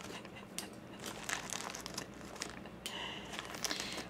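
Clear plastic zip bag crinkling as a hand rummages in it for dried rose hips: faint, irregular rustles and small clicks.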